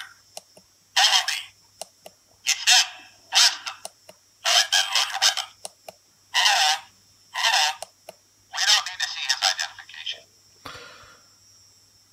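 Recorded Stormtrooper voice phrases played back one after another through a small, tinny speaker on a blaster sound board, a new short phrase at each trigger press. There are several brief phrases with short gaps between them, all thin with no bass.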